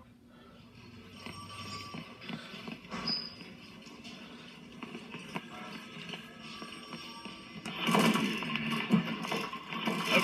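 Television show soundtrack played through a screen's speaker: faint background music, rising to a louder passage about eight seconds in.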